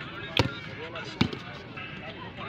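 A volleyball struck by hand twice, two sharp smacks a little under a second apart, over the low chatter of onlookers.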